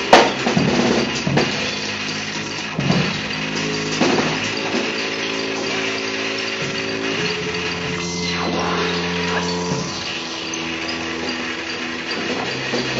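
Live trio of drum kit, bowed double bass and laptop electronics: held tones that step to a new pitch every second or two, with a few sharp drum and cymbal hits in the first few seconds, the loudest right at the start.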